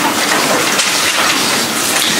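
Bible pages rustling as a roomful of listeners leaf through to a chapter: a steady papery hiss with no break.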